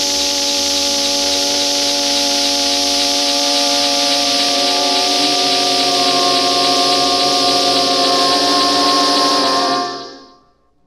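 Early electronic music on a Buchla synthesizer: a loud, steady hiss of noise over a cluster of held electronic tones, some of which shift in pitch about halfway through, everything fading out quickly near the end.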